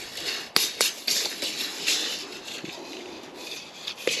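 Paper seed packets rustling and crinkling as they are handled, with two sharp clicks about half a second and just under a second in.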